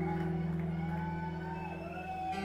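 Live progressive rock band music in an audience recording: a held low chord, with a faint higher line wavering and gliding over it.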